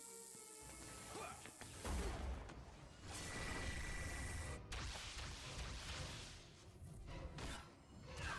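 Cartoon action sound effects over a dramatic score: heavy impacts, then about three seconds in a sustained repulsor energy-beam blast with a steady high whine lasting about a second and a half and cutting off suddenly, followed by further crashes.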